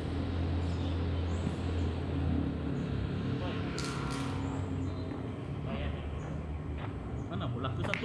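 Low steady rumble, like an engine running nearby, under faint voices; it weakens after about three seconds. A couple of sharp clicks come around four seconds in, and short crunching clicks of footsteps on gravel near the end.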